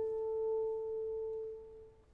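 French horn holding one soft, pure note on its own, the lower accompaniment having just dropped away; the note fades out to nothing near the end.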